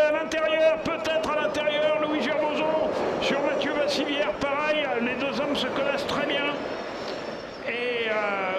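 Electric ice-racing cars running on the circuit: a steady whine that fades near the end, with sharp clicks scattered through, under continuous speech.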